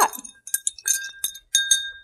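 A metal bar spoon clinks against a glass mixing glass as an old-fashioned is stirred to mix in the bitters. There are several sharp clinks, each leaving a short, high ringing tone.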